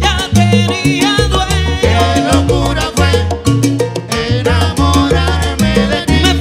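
Salsa orchestra playing live: a syncopated bass line under piano, trombones and percussion (congas and timbales), with a steady driving beat.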